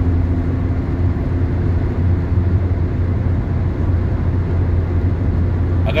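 Steady road and tyre noise heard inside a car cabin at expressway speed: a constant low rumble with no breaks.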